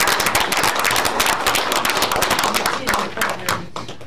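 Applause in a meeting room: many people clapping together in a dense patter that thins out near the end.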